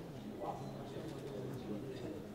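A man talking: continuous speech without pause.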